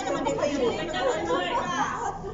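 Several people chatting at once, their voices overlapping into general chatter.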